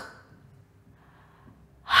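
A woman's voiceless, breathy 'h' letter sound, spoken on its own as a phonics sound, about two seconds in after a quiet pause.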